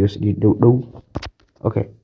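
Speech only: a man talking in short phrases.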